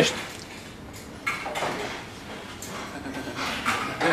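Indistinct voices and brief noisy sounds from a small group of people in a room, with a short burst about a second and a half in.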